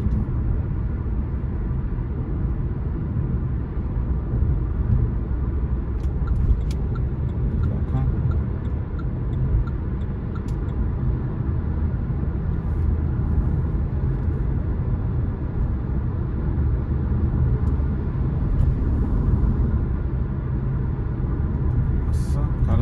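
Steady road and engine noise inside a moving car's cabin at highway speed: a continuous low rumble of tyres and engine with little change.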